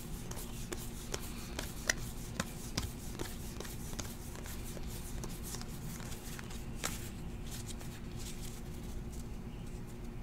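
A hand-held stack of 2018 Panini Classics football trading cards being thumbed through card by card, making irregular soft flicks and ticks, a few a second, that thin out near the end, over a steady low hum.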